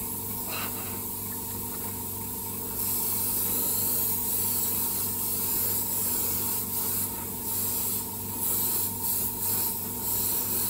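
An airbrush hissing as it sprays paint onto a plastic model car body, in passes that swell and ease, over a steady low hum.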